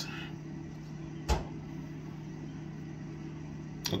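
Steady low electrical or appliance hum in a small room, with a single short click about a second in.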